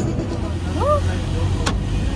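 Steady low rumble inside a minibus cabin, with a short voice sound about a second in and a sharp click near the end.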